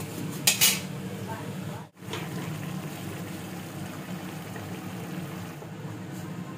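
Metal cookware clattering sharply once about half a second in, then a steady low hiss of a potato-and-bean curry simmering in a metal kadai.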